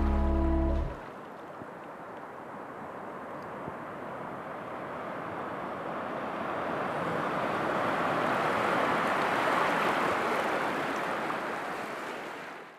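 A held final chord of music cuts off about a second in, leaving the rushing of ocean surf on a beach. The surf swells, then fades out near the end.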